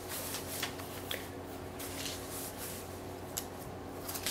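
Papers rustling and being shuffled in short, scattered strokes, over a steady low electrical hum in a small room.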